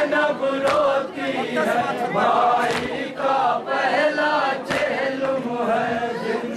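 A group of men chanting a noha, a Shia lament, in unison. Sharp chest-beating strikes (matam) land in time with it, roughly once a second.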